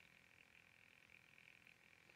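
Near silence: faint room tone with a faint, steady high-pitched hum.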